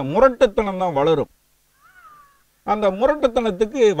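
A man speaking, and in a pause about two seconds in, a short faint animal call that rises and then falls in pitch. Speech resumes after it.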